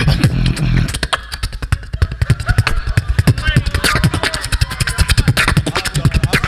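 Beatboxing into a handheld microphone: a deep held bass tone for about the first second, then a fast, dense run of click and snare-like hits over pulsing bass.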